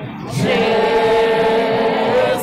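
A procession crowd singing a devotional hymn together in many voices, holding one long steady note from about half a second in.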